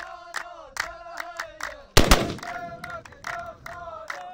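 A group of men chanting a traditional Saudi folk dance song in unison, with sharp hand claps about two or three a second. About halfway through, one loud gunshot-like blast from a black-powder gun fired as a blank in the dance cuts over the singing and dies away quickly.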